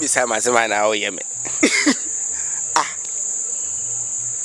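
Crickets trilling in a steady, unbroken high-pitched chorus.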